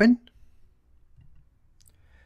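A faint click of a computer mouse button near the end, opening a file dialog, over quiet room tone.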